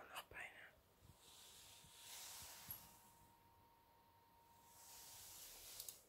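Very quiet: a person whispering faintly, in two long breathy stretches, with a couple of soft mouse clicks near the end.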